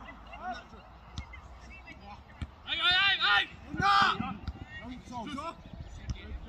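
Players shouting to each other during a football match: two loud, high-pitched calls about three and four seconds in, with quieter calls around them and a short sharp knock before the first.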